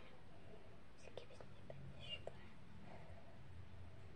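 Soft whispering with a few faint small clicks.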